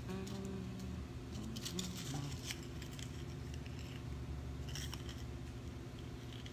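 Scattered faint clicks and taps of small hard objects being handled, over a steady low hum, with a short hummed 'mm-hmm' near the start.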